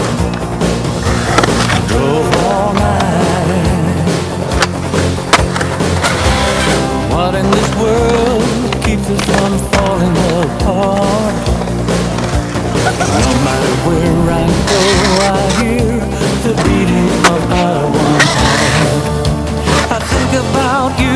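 Skateboard wheels rolling on concrete, with several sharp clacks and knocks of tails popping and boards landing, under a rock song with singing.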